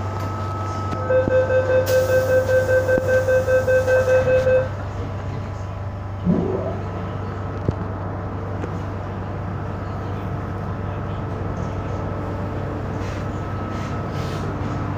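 MTR M-Train door-closing warning: a rapid beeping tone, about four to five beeps a second, starts about a second in and lasts some three and a half seconds, signalling that the doors are closing. A short rising sound follows about six seconds in, and the carriage's steady low hum runs underneath throughout.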